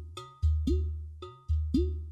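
Udu clay pot drum played by hand: deep bass tones alternate with sharp taps on the clay body and short notes that swoop upward in pitch, about six strokes in two seconds in a steady rhythm.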